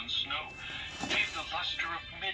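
Recorded voice reading the story over background music, played through the small built-in speaker of a pop-up book's sound module; it sounds thin, with nothing above the upper midrange.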